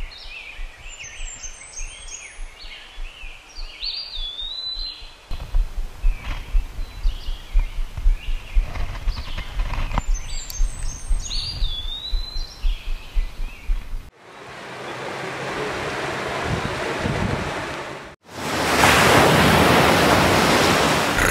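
Songbirds chirping and whistling, with a low rumble of wind on the microphone joining in about five seconds in. About fourteen seconds in, this cuts to a rising rush of water, and near the end a loud crash of breaking surf and spray.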